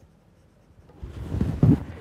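Stylus scratching across a pen tablet while a word is handwritten, a run of rough strokes starting about halfway through.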